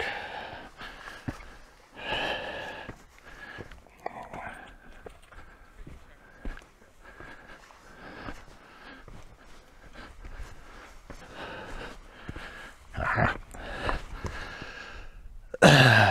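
A man breathing hard through his mouth as he climbs a steep rocky scramble, with a heavy exhale every couple of seconds and a few sharp knocks between them.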